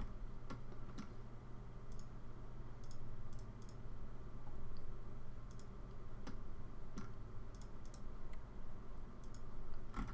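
Computer mouse clicking at irregular intervals, a click every second or so, over a steady low hum.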